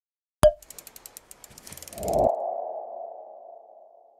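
Logo sting sound effect: a sharp click, a run of quick ticks, then a low hit about halfway through with a ping-like ringing tone that fades away slowly.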